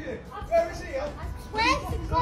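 Speech only: two people arguing, one insisting nobody is there and the other refusing to believe it.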